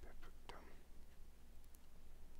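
Faint sounds of crocheting: a soft brief rustle of cotton yarn and a few light clicks of the crochet hook and plastic stitch marker, over a low steady hum.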